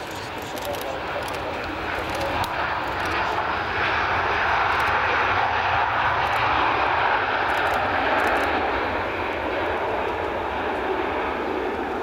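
Boeing 737-800's CFM56-7B jet engines in reverse thrust during the landing rollout: a steady rushing engine noise that builds over the first few seconds, is loudest in the middle, then eases slightly.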